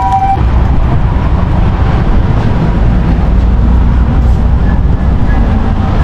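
Steady low rumble of road traffic. A two-tone emergency-vehicle siren alternating between two pitches cuts off about half a second in.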